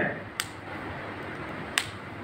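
Two short, sharp clicks about a second and a half apart, over a steady low hiss of room noise.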